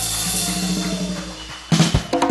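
Live joropo band with drum kit holding a sustained chord under light drumming, then a burst of loud drum and cymbal hits near the end.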